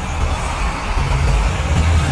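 Soundtrack under the end credits: a loud, noisy swell with a deep rumble, growing louder toward the end.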